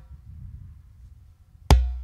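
Hand-played Remo djembe: the ringing of the previous stroke fades into a pause of more than a second and a half, then one loud, sharp hand stroke with a deep boom and a ringing tail near the end.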